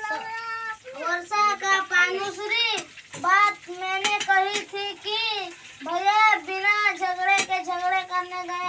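A boy reading his school lesson aloud in a sing-song chant, in held, evenly paced syllables that rise and fall. A few sharp clicks are heard along with it.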